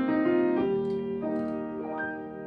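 Grand piano played slowly and softly: a melody with a new note about every half second over held, ringing chords, easing off a little toward the end.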